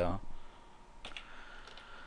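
A spoken word, then a few faint clicks from a computer being operated, about a second in, over low background hiss.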